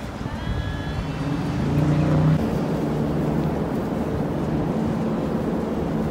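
Road traffic: cars driving past on a busy city road, a steady engine and tyre rumble that swells slightly about two seconds in.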